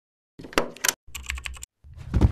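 Keyboard typing clicks: a few separate keystrokes, then a quick run of clicks. Right at the end a deeper, bass-heavy sound swells up.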